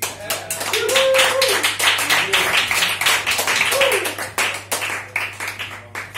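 Audience clapping, with a voice calling out twice; the clapping thins out near the end.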